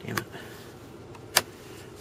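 A single sharp click about a second and a half in, from a 2011 Hyundai Sonata's heated-seat button being pressed to switch a seat heater on, over a low steady background.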